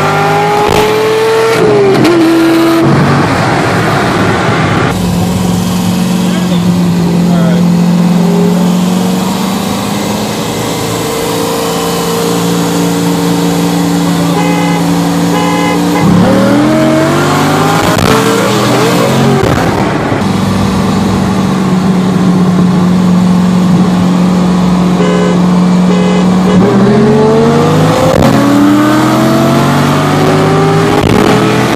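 Corvette V8 heard from inside the cabin: accelerating hard with rising pitch and a gear change in the first few seconds, then cruising steadily, pulling hard again from about the middle, and starting another hard pull near the end.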